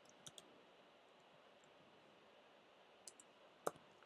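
Faint computer keyboard keystrokes over near silence: two light key clicks just after the start, then a short run of a few more near the end as a word is typed.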